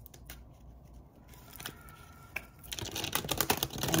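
Tarot cards being shuffled by hand: a few faint clicks at first, then a rapid run of card clicks and slaps from about three seconds in.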